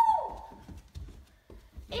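A child's high-pitched squeal, held and then sliding down in pitch as it fades in the first moments. It is followed by soft thumps of feet coming down carpeted stairs.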